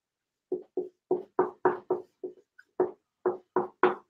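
Dry-erase marker squeaking on a whiteboard as letters are written: a quick, uneven run of about a dozen short squeaks, all at much the same pitch.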